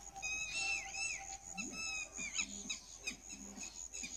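An animal's short calls, repeated two or three times a second, each rising and then falling in pitch, over a steady high-pitched whine.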